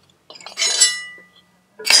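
A few light taps, then a single metallic clink about half a second in that rings briefly and dies away, as the split halves of a 1973 Harley-Davidson Electra Glide's rear 'banana' brake caliper are pulled apart off the disc.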